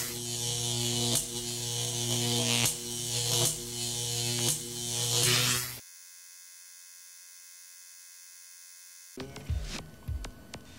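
Loud electrical buzz sound effect of a neon sign, with sharp crackles about once a second. It stops about six seconds in, leaving a faint steady high-pitched hum.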